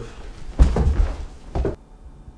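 A heavy thud of a person collapsing onto a carpeted floor about half a second in, followed by a second, shorter thump about a second later.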